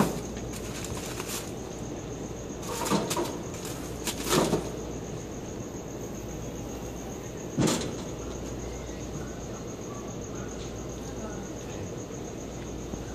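Aluminium-foil packets crinkling and knocking on a gas grill's grate as they are set down, in a few separate bursts, the last and sharpest about eight seconds in as the metal lid is shut. Crickets chirp steadily underneath.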